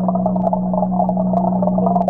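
Steady low hum of aquarium equipment with a fluttering, warbling tone above it, heard muffled and dull through a camera submerged in the tank.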